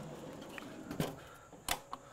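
A metal trundle drawer sliding shut on its runners under a ute tray, followed by a few sharp clicks and knocks as it closes and latches, the loudest in the second half.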